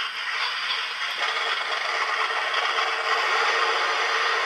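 A Heng Long RC tank's sound unit playing its simulated engine sound through the tank's small speaker after the tank is switched on. It runs steadily and evenly, with a rough, rattly texture.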